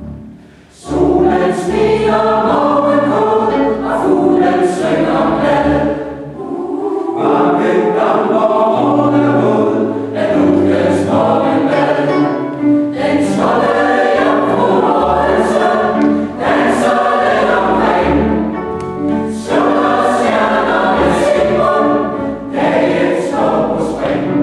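Mixed choir singing in a church, the voices coming in together about a second in after a brief pause.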